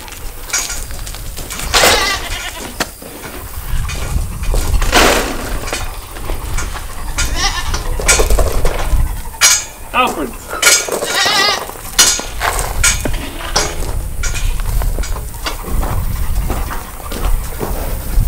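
Several goats bleating again and again, calling one after another, some calls with a wavering pitch.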